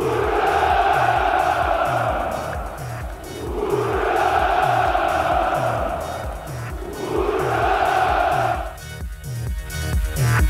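Massed ranks of Russian soldiers on parade shouting a long, drawn-out "Ura!" three times in answer to the speech's closing cheer, over a steady electronic music beat.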